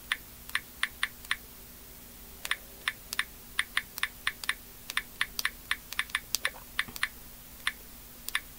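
Typing on a keyboard: a run of quick, sharp key clicks, two to four a second, with a pause of about a second after the first few.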